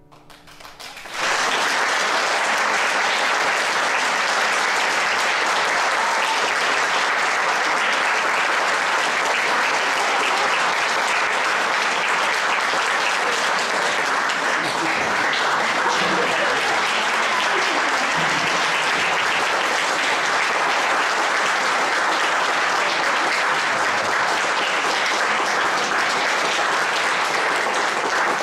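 Audience applauding: clapping breaks out about a second in and goes on steadily.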